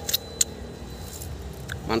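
A man biting into and chewing a green Dixon grape: a few short, sharp clicks, the loudest about half a second in and another near the end, over a steady low rumble.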